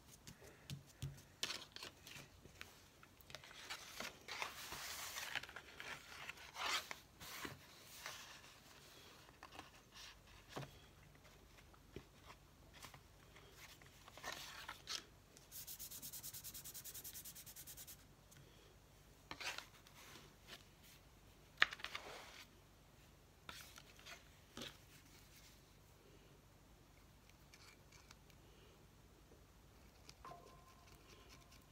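Faint rubbing and rustling of paper and card as journal pages and a small card piece are handled and turned, with scattered light taps. A steady rasp of about two seconds comes about halfway through.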